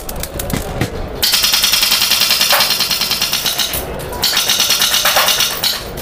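HPA-powered airsoft gun firing two long full-auto bursts, a fast even rattle of shots, the first beginning about a second in and the second following after a short pause.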